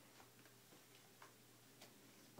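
Near silence with a few faint, scattered taps and clicks as a baby handles picture books in a basket, the books knocking lightly against each other and the basket.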